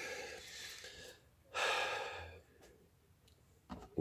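A man's breathing close to the microphone: a soft exhale trailing off, then a second breath about a second and a half in.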